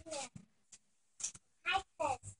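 A few short, high-pitched vocal squeals that slide up and down in pitch: one at the very start and two more near the end.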